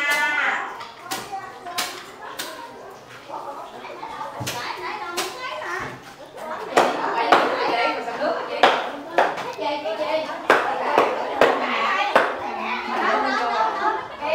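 A knife chopping roast pork: sharp knocks at an irregular pace of about one a second, with children's voices and chatter behind.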